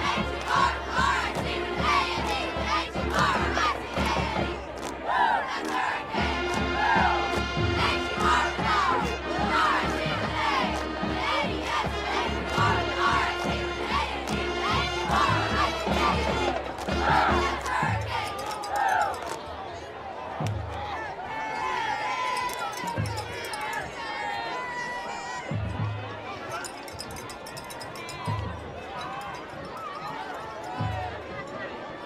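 Football crowd in the stands cheering and yelling, many voices at once, over a fast low beat. About two thirds of the way through the crowd quietens, and the beat gives way to single low thumps every couple of seconds.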